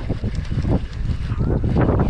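Wind buffeting a body-worn camera's microphone: a loud, uneven low rumble.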